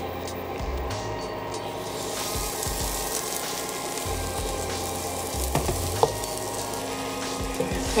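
Tomato paste in a warm nonstick saucepan sizzling softly, with a couple of light knocks around the middle.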